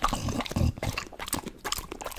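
English bulldog chewing a mouthful of watermelon and licking its lips close to the microphone: a run of irregular wet smacks and clicks.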